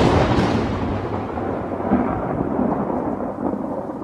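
Film-soundtrack thunder: a thunderclap breaks just before, and its loud rolling rumble carries on and slowly fades, with a slight swell about halfway through.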